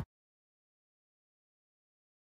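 Silence: the sound track cuts off abruptly right at the start, and nothing follows.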